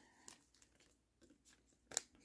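Near silence: room tone with a few faint, soft clicks of trading cards being handled.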